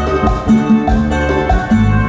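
Amplified live dance-band music: sustained melody notes over a bass line and a regular drum beat.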